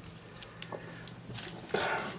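Quiet room hum with a few faint clicks from trading cards and a foil booster pack being handled, then a brief louder sound near the end.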